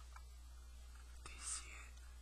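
A short, faint whisper close to the microphone about one and a half seconds in, over a steady low electrical hum.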